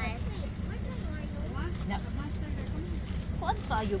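Ceres bus engine running, a steady low rumble heard from inside the passenger cabin.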